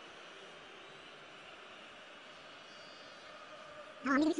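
Faint, steady, even noise with no speech and no distinct events.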